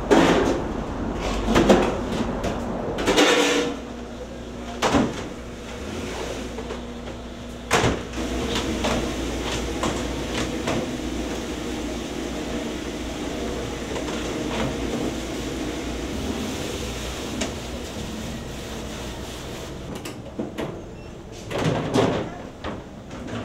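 Red plastic food trays knocking and clattering as they are handled and stacked, with several sharp knocks in the first eight seconds, over a steady hum.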